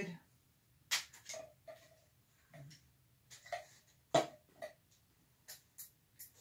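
Sparse, quiet handling sounds of oil painting on a canvas: two sharp clicks, about one and four seconds in, and a few brief soft sounds between them as paint is worked with a gloved hand.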